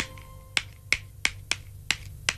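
Sharp finger snaps, about three a second, as a sparse background-music cue over a faint held tone.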